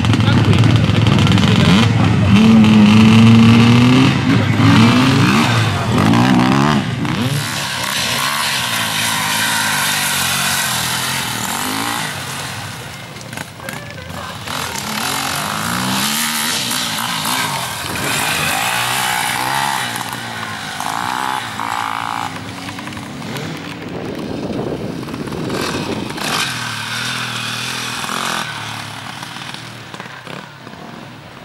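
Enduro motorcycle engine revving hard, its pitch rising and falling over the first several seconds, then running at changing revs as the bike rides away, growing fainter toward the end.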